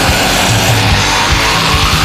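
Loud thrash metal: distorted electric guitars and bass with rapid drum hits.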